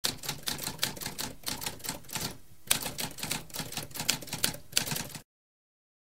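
Typewriter typing: a run of rapid, uneven keystrokes with a short pause a little over two seconds in, stopping about five seconds in.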